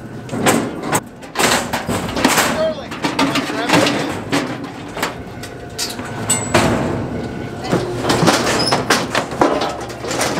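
Steel gates and panels of a hydraulic bison squeeze chute and its alleyway clanking and sliding, with repeated sharp knocks, over indistinct voices of the handling crew.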